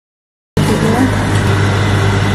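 Silence for about half a second, then a steady low hum from a 7-Eleven Slurpee slush-drink machine starts abruptly, with faint voices over it.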